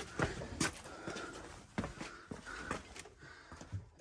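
Scattered soft knocks, scrapes and rustles of cardboard boxes being shifted and pulled out of a cluttered closet by hand.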